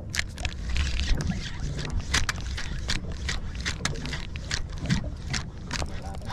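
A 4000-size spinning reel cranked fast to bring a jig up from the bottom, giving a quick run of sharp clicks, about four or five a second. Under it runs a steady low rumble of the boat.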